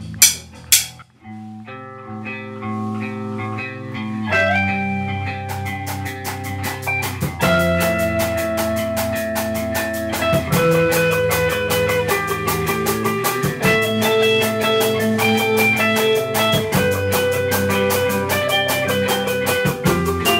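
A rock band's song starting up: two sharp clicks at the very start, then sustained guitar chords from about a second and a half in. Drums with busy cymbals come in about five seconds in, and the full band plays on, getting louder.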